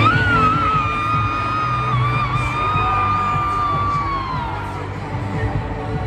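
Loud live concert music over a stadium sound system, with yelling and whooping from the crowd. A single high note is held for about four seconds and slides down near the end.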